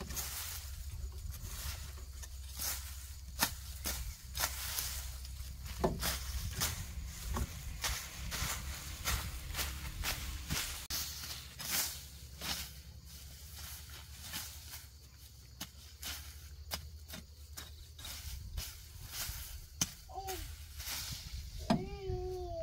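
Grass and weeds being cut with a machete and pulled up by hand: repeated rustling with many short, sharp cuts and snaps.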